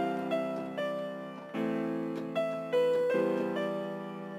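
FL Studio playback of a software-instrument melody: single notes over sustained chords, with the chord changing about a second and a half in and again about three seconds in. It is a test melody built around E, the fifth note of the A minor scale, over a happy chord progression.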